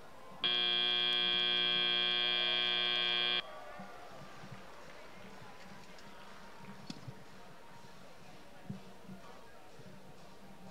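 FRC field's end-of-match buzzer sounding as the match timer runs out: one steady, many-toned blare about three seconds long that starts and cuts off abruptly. Faint arena background follows.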